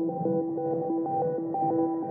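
Intro of a melodic techno track: a synthesizer arpeggio of quick, repeating notes, filtered so that it sounds muffled.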